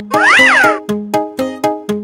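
A single meow that rises and then falls in pitch, over a children's-song instrumental, followed by short, bouncy notes about four a second.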